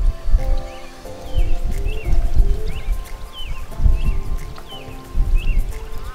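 Background music with steady held notes, over irregular low rumbling gusts of wind on the microphone.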